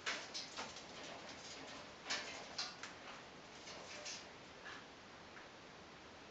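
A run of short, dry clicks and scuffles, thickest in the first four seconds and sparse after, as a small pet parrot moves from a hand down onto a play-stand table.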